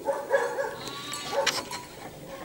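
A farm animal bleating: two calls, a longer one at the start and a shorter one about a second and a half in.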